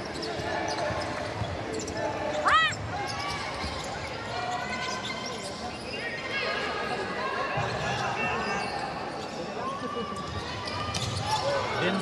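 Live basketball play on a hardwood court: the ball bouncing as it is dribbled and short sneaker squeaks, the sharpest about two and a half seconds in, over the steady chatter and shouts of the crowd.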